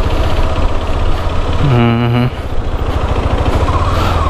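KTM 390 Adventure's single-cylinder engine running at low speed as the motorcycle rolls slowly across beach sand, a steady low rumble. A voice speaks briefly about halfway through.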